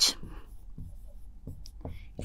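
Marker pen writing on a whiteboard: a few short, faint scratching strokes as a word is written out.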